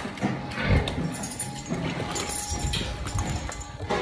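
Cow hooves clopping irregularly on a wet concrete floor as a cow walks.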